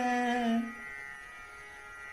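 A male Hindustani classical vocalist holds a long, slightly wavering note that fades out about half a second in. After that only a steady, quiet drone remains.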